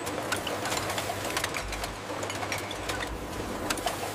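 Bottle-handling machinery on a bottling line running: a steady low hum with many small, irregular clicks.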